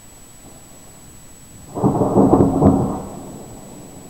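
A nearby thunderclap: it starts suddenly almost two seconds in, is loud for about a second, then rumbles away.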